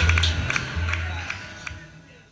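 Rockabilly trio of upright double bass, acoustic rhythm guitar and electric lead guitar playing the closing bars of a song live; the bass notes stop a little past halfway and the sound then dies away.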